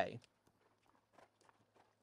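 A man's sentence trails off. Then a horse's hooves fall faintly on soft arena sand, with a couple of soft ticks about a second in.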